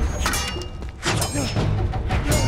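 Film fight sound: two sharp metal weapon clashes about a second apart, each ringing on afterwards, with a man's effortful grunts between them over a background music score.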